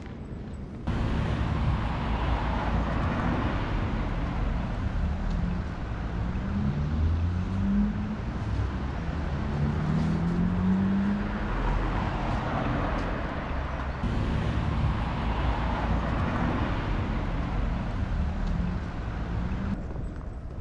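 Street traffic: cars passing one after another in slow swells, with one engine speeding up near the middle.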